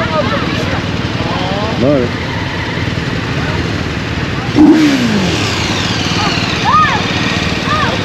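Motorcycle engines idling in a steady low rumble, with street traffic around them. A few short voice sounds rise out of it, one a falling call about halfway through.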